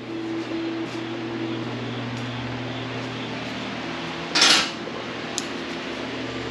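Steady hum of a shop fan running, with a brief clatter about four and a half seconds in and a faint click just after.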